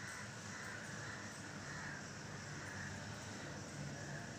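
A blackboard duster rubbing chalk off a blackboard in steady back-and-forth strokes, a rhythmic scrubbing that swells and fades with each stroke.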